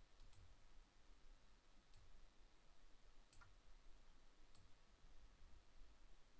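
Near silence, with about four faint, short clicks a second or more apart.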